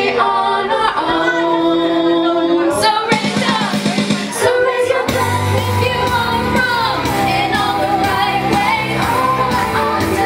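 A woman singing live into a microphone over instrumental accompaniment. The accompaniment fills out with a heavier low end and steady beats about halfway through.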